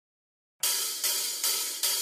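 Silence for about half a second, then a drum-kit cymbal struck three times, roughly two-thirds of a second apart, each hit left ringing: a drummer's cymbal lead-in to a heavy metal song.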